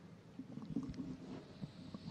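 Faint room noise with a few soft, scattered low sounds.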